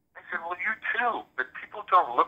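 Speech only: a person talking in continuous conversation, with the thin, narrow sound of a phone line.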